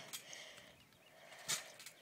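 Mostly quiet, with one soft thump about one and a half seconds in as hands come down on a trampoline mat going into a handstand.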